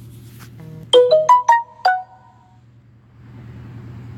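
A short electronic chime from a push-to-talk radio handset: five quick notes in about a second, the last two ringing on briefly, over a steady low hum.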